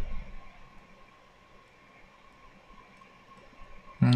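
Quiet room tone: a faint steady hiss and hum with a thin steady tone, and a few very faint ticks.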